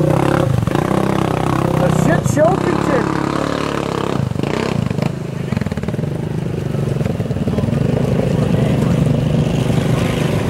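ATV engine running under load as the quad wades through deep, muddy water, with voices in the background.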